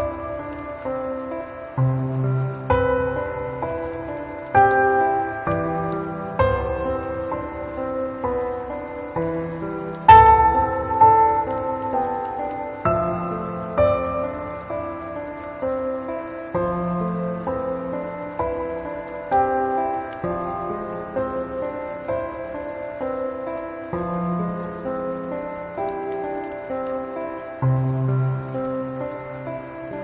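Slow, calm piano music, single notes with low sustained bass notes changing every few seconds and one louder note about ten seconds in, laid over a steady bed of rain sounds.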